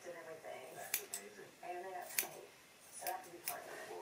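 A few sharp snips of scissors cutting through a lock of hair, spaced roughly a second apart.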